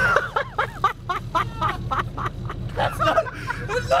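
A person laughing hard in quick, high-pitched bursts, about five a second.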